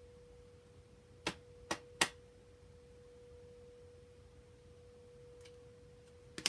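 Three sharp clicks of cards being laid down on a wooden table, about a second in and close together, with a fainter one near the end. A faint steady single-pitched tone runs underneath throughout.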